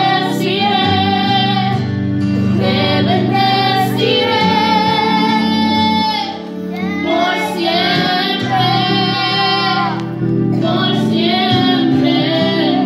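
A woman sings a Spanish-language worship song through a microphone and church PA over a backing accompaniment. She holds long notes, with short breaks between phrases about six and ten seconds in.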